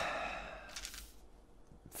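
A man's long sigh that fades over about a second, followed by a fainter breath.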